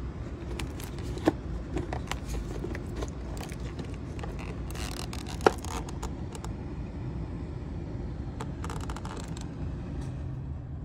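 A few sharp clicks and short scraping rustles from hands handling plastic parts in a car's engine bay, over a steady low rumble.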